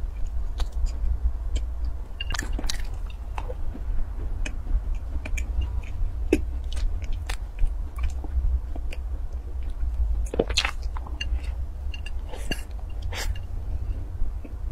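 A person chewing a soft baked pastry with closed lips, giving many small wet mouth clicks and smacks. A few louder clusters of clicks come about two and a half seconds in and again from about ten to thirteen seconds in. A steady low hum runs underneath.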